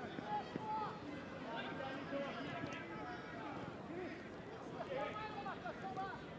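Faint shouts and calls of players on a football pitch over a low, steady stadium murmur.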